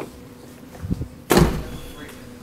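A soft low knock just before a second in, then one loud thump with a short low rumble: the Nissan Murano's rear liftgate being shut.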